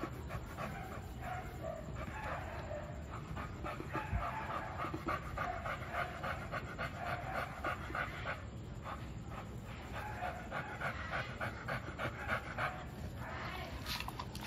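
American Bully dog panting close to the microphone in quick, regular breaths.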